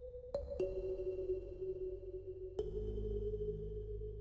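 Ambient background music of soft struck bell-like notes: one pair close together near the start and another about two and a half seconds in, each ringing on and slowly fading.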